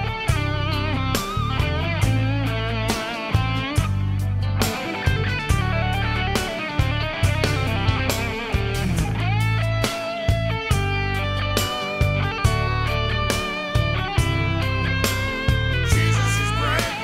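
Instrumental break in a rock song: a lead electric guitar plays a solo of bent, wavering notes over bass and drums. About nine seconds in, the guitar slides down and then moves to longer held notes.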